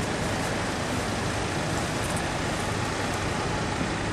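Steady road traffic noise on a busy street, with a low hum of car engines beneath it.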